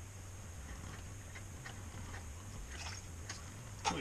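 A few faint, scattered clicks and ticks as a spinning rod and reel are handled, over a steady low hum.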